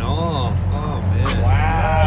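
Short, rising-and-falling vocal exclamations from the men at the cleaning board, over a steady low hum, with one sharp click a little over a second in.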